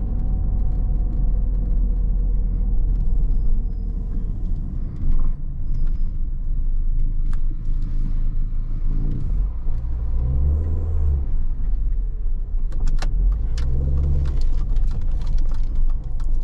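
Inside the cabin of a 2001 Mini One R50 with a 1.6-litre four-cylinder petrol engine, driven slowly over cobblestones: a steady low rumble of engine and tyres. The engine note swells twice, about ten and fourteen seconds in. Sharp clicks and rattles come near the end.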